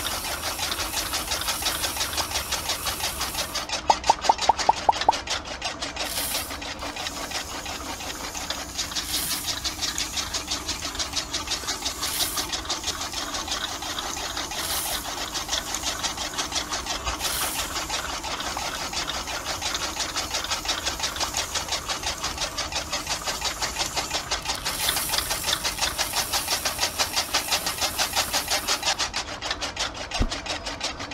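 Small electric motor driving a miniature model grain machine for paddy rice, with a rapid, steady mechanical rattle. About four seconds in there is a short run of louder ticks.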